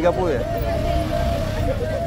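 Street hubbub: people's voices, one of them drawn out and wavering, over a steady low rumble of traffic.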